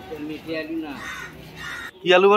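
Indistinct voices of people talking in the background, in short soft phrases.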